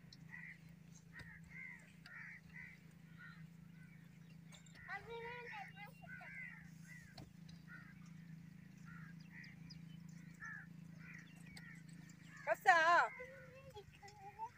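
Birds calling repeatedly in short chirps over a low steady hum, with a brief wavering voice-like call about five seconds in and a louder, short wavering call near the end, the loudest sound.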